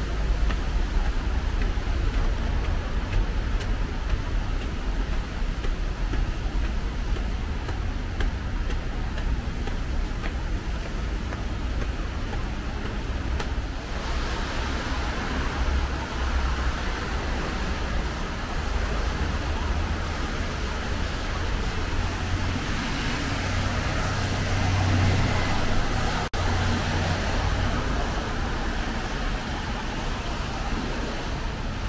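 Street traffic on rain-wet roads: a steady low rumble of engines and tyres, growing louder for a few seconds past the middle as a heavier vehicle passes.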